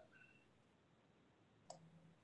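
Near silence on a video call line, with one faint click about three quarters of the way through.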